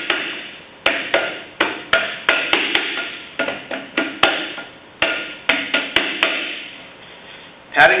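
Hands slapping a ball of wet pugged clay down onto a plastic bat on the potter's wheel head: an uneven run of slaps, two or three a second, that stops about six seconds in. The patting fixes the clay firmly to the bat before coning and centering.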